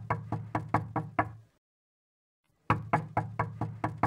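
Rapid knocking on a door, about four to five knocks a second, in two runs. The first run stops about a second and a half in, and a second run starts a little over a second later.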